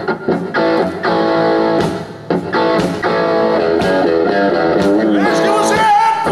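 Live country-rock band playing an instrumental passage: strummed acoustic and electric guitars over bass and drums, with regular cymbal strokes. Near the end a sliding, pitch-bending melody line rises over the chords.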